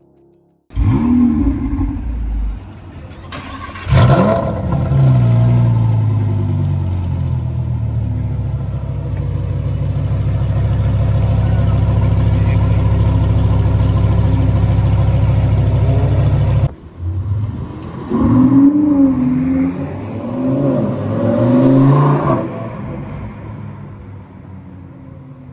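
Lamborghini Huracán STO's naturally aspirated V10 starting up about a second in, revved once with a rising note near four seconds, then settling into a steady high idle that cuts off abruptly; after a short gap an engine revs up and down a few times.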